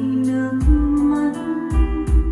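A Vietnamese song with a sung vocal over a sustained accompaniment, played back through a pair of JBL G2000 Limited hi-fi loudspeakers. Two deep bass beats land about a second apart.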